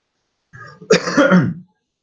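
A man clearing his throat once, loudly, starting about half a second in and lasting about a second.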